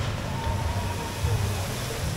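Log flume boat splashing down into the pool at the bottom of its drop, sending up a spray: a rush of splashing water over a low rumble.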